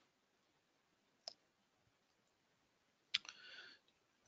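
Near silence broken by two faint clicks, one about a second in and one about three seconds in, the second followed by a short soft noise. They are the clicks of a computer being used to advance to the next slide.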